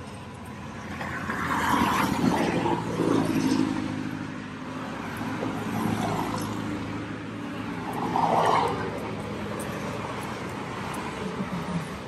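Road traffic passing close by, over a steady low engine hum. Vehicles go by about two seconds in and again about eight seconds in.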